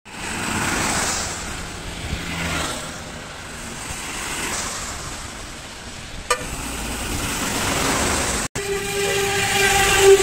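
Road traffic passing on a wet highway: tyre hiss from the wet road swells and fades as each vehicle goes by. A very short toot comes about six seconds in, and near the end a vehicle horn sounds loud and steady.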